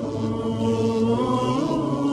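Chanted vocals without instruments: long-held notes that slide slowly from pitch to pitch, with no beat.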